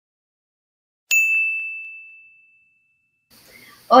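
A single bright ding from a chime sound effect, starting sharply about a second in and ringing out as it fades over about a second and a half.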